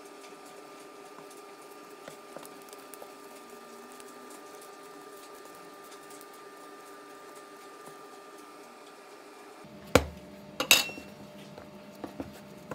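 Quiet handling of bread dough over a faint steady hum. About ten seconds in come a sharp knock on the wooden counter and then a quick double clatter with a brief ring, from hard kitchen items knocking on the wood.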